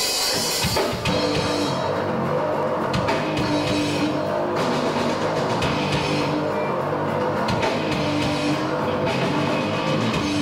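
A heavy metal band playing live: distorted electric guitars and a drum kit come in on a sudden loud hit, then settle into a repeating riff over a steady beat.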